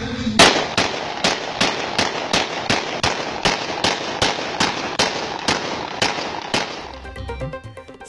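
A handgun fired repeatedly into the air: about eighteen sharp shots at roughly three a second, stopping about a second before the end.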